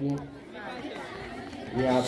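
Faint background chatter of onlookers in a lull between a man's spoken commentary. His voice trails off at the start and comes back near the end.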